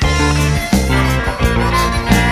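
Electric blues band playing an instrumental passage with no singing: a guitar lead over bass and a steady beat.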